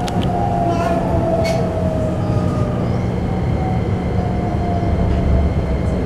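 Keikyu New 1000 series train's Toyo IGBT-VVVF inverter and traction motors whining as the train slows for a station, heard inside the passenger car over the steady rumble of the running gear. The whine falls slowly and evenly in pitch, and a couple of sharp clicks come in the first two seconds.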